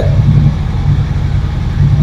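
Harley-Davidson X440's single-cylinder engine idling steadily with a low, even pulsing beat.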